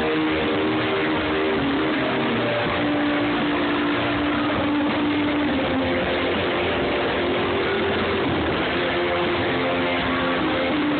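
Live rock band playing loudly, with electric guitars, keyboard and drums, and a long held note a few seconds in. Heard through a phone's microphone in the crowd, so the sound is dense and muddy.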